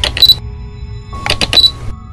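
Ambient synth music with sustained tones, broken twice by a quick cluster of camera-shutter click sound effects, once at the start and again about a second later.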